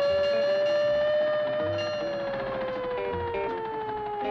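Plucked-string bluegrass music with a long siren wail from an antique fire engine over it. The siren rises slightly and then slowly winds down in pitch.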